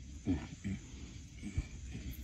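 A person's low voice making three short, faint sounds that drop in pitch, spread over two seconds.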